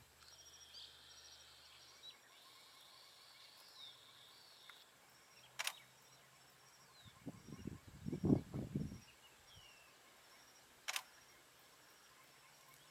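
Faint grassland ambience of high chirps and trills from insects and birds, with two sharp clicks, one about halfway and one near the end. The loudest event is a short cluster of low rumbling thuds in the middle.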